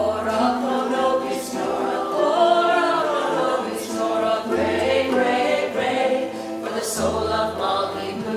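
Women's voices singing a song together in held, wavering notes, over a low instrumental accompaniment.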